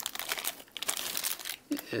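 Thin clear plastic bag crinkling and crackling in quick, irregular rustles as it is pulled open and off a small vinyl toy figure.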